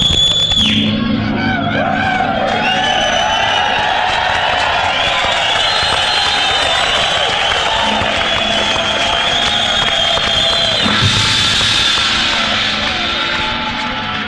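Live rock band playing in concert, with the crowd cheering and yelling over it. There is a sharp loud hit at the very start and another about eleven seconds in.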